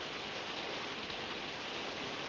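Steady, even hiss, with no distinct sound standing out.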